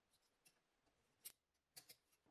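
Tin snips cutting thin sheet metal: a few faint, short, crisp snips, the loudest about a second and a quarter in and two close together near the end.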